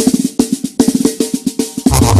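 Music dominated by a fast drum passage of rapid snare and tom strokes, like a drum roll. Near the end it gives way to a different, louder track with a heavy bass line.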